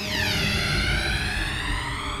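Dramatic synthesized music sting on a reaction shot: a rich, many-overtoned tone that sweeps down in pitch and levels off, over a low rumble and a held background chord.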